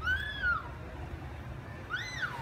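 Two short high-pitched cries, each rising then falling in pitch: one lasting about half a second at the start, another starting near the end.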